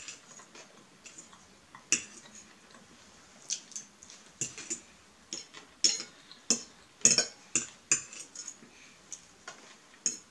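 Metal fork clinking and scraping against a ceramic bowl in a string of irregular sharp clicks, busiest in the second half.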